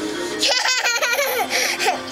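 A young child laughing in a quick run of giggles, starting about half a second in, after the last strum of a small ukulele's strings rings out.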